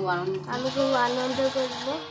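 A person's voice making drawn-out sounds without clear words, wavering up and down in pitch, over a low steady hum that stops a little past halfway.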